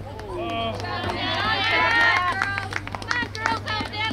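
Spectators and players shouting and cheering, many voices at once, swelling about a second in, with a few sharp claps in the second half.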